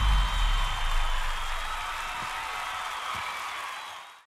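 Outro sound effects: the low rumble of a boom dies away in the first half second, under a steady crowd-like cheering noise that fades out toward the end.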